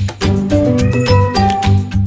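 Upbeat background music with a steady beat, and a single cat meow about a second in, rising and then falling in pitch.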